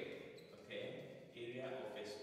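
A man's voice speaking in short phrases.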